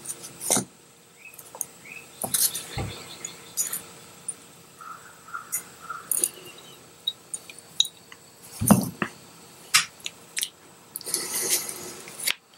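Small metal gunsmithing parts and a hex nut driver handled on a rubber bench mat: scattered light clicks and taps, with one louder knock about nine seconds in and a short rustle near the end.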